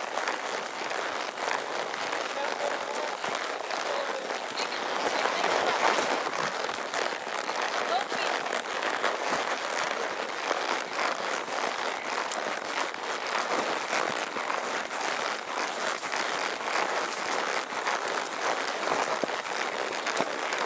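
Continuous crackly rustling of brush and pine branches brushing past a horseback rider on a narrow trail, full of small sharp ticks.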